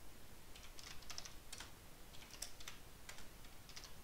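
Typing on a computer keyboard: an irregular run of about a dozen faint key clicks, some in quick clusters with short pauses between, as short terminal commands are entered.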